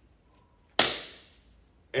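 A single sharp hand clap about a second in, followed by a short room echo.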